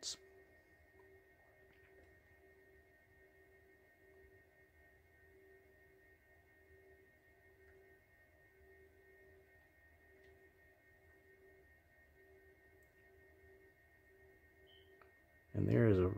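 Near silence: faint room tone with a thin, steady high whine and a faint low hum that comes and goes.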